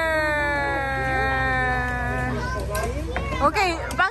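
A child's long, drawn-out vocal cry, one held tone that slides slowly down in pitch and stops a little over two seconds in. Short bits of voices follow near the end.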